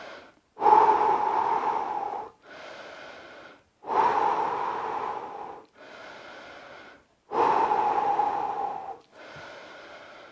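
A man breathing deeply and slowly to recover after a hard bout of high knees: about three cycles of a loud, long breath of roughly two seconds followed by a quieter, shorter one, with brief pauses between.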